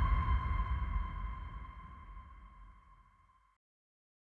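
Closing sound of a film trailer's score: a single held ringing tone over a low rumble, fading steadily and cut off to silence about three and a half seconds in.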